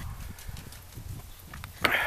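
Low rumble from wind and handling on a handheld camera's microphone, with a few soft knocks, then one sharp crack near the end.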